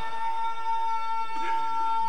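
A man's voice holding one long, steady sung note through a PA system, without wavering in pitch.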